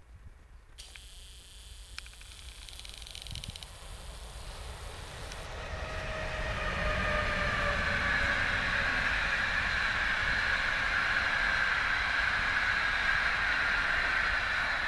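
A PKP EP09 electric locomotive and its train of passenger coaches run past. A thin high hiss comes first, then the rolling rumble and hiss of the wheels on the rails grows louder from about six seconds in and holds steady.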